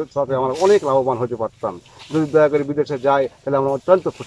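Only speech: a man talking in Bengali in short phrases with brief pauses.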